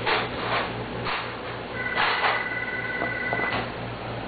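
Number puzzle pieces being handled and fitted into the board: several short rustling, scraping bursts. In the middle a steady high two-note tone sounds for about two seconds.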